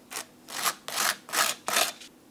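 A knife spreading Vegemite across dry toast, scraping over the crust in about five back-and-forth strokes.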